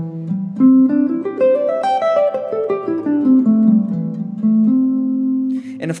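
Semi-hollow-body electric guitar playing a single-note line that climbs note by note to a peak about two seconds in, then steps back down and ends on a long held low note.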